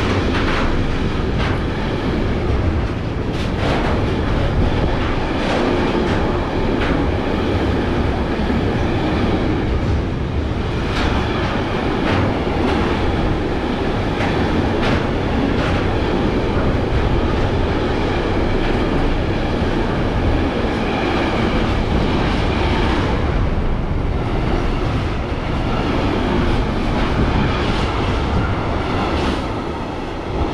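Freight train rolling past at close range: a loud, steady rumble of steel wheels on rail, with irregular clacks as wheelsets cross rail joints.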